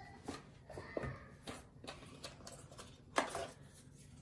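Cardboard packaging being handled: rustling and light knocks as a box is moved and a paper insert is lifted out, with a sharper clack about three seconds in.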